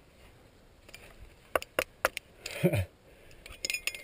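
Metal clinks of a climbing quickdraw's carabiners against an old ring piton in the rock as the climber clips it: three sharp clicks a little past the middle and a quick run of clinks near the end, with a brief voice sound between them.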